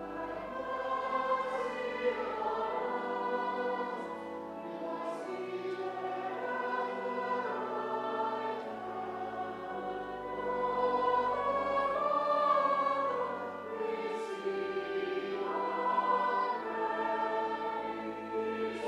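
Church congregation and choir singing a hymn together, over held low notes from an accompaniment.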